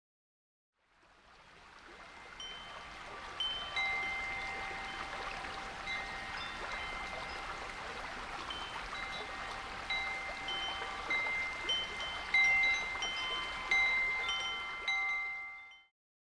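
Wind chimes ringing in scattered, overlapping strikes over a steady soft hiss. The sound fades in about a second in and the chimes come denser and louder toward the end before a quick fade-out.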